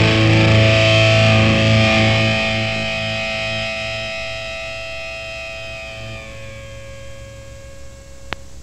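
Distorted electric guitar chord left ringing out at the end of a hardcore punk song, fading slowly; about six seconds in the upper notes die away, leaving one thin sustained tone over a low pulsing drone.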